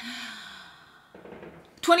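A woman sighs: a breathy exhale with a little voice in it, falling in pitch and fading over about a second. Then a quieter breath in, and speech starts again near the end.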